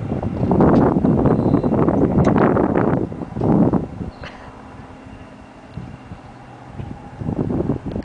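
Rustling and knocking of the camera being handled and moved, with wind buffeting its microphone. The noise is loud for the first three seconds, comes again in a short burst about halfway, and then dies down to a low rustle until a last burst near the end.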